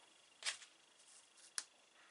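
Two short, sharp clicks about a second apart, the second crisper, from small hand tools such as tweezers being handled while a cut decal is picked up.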